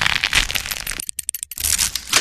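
Crackling, static-like noise of a glitch sound effect for an animated logo, thinning out for a moment about a second in before returning.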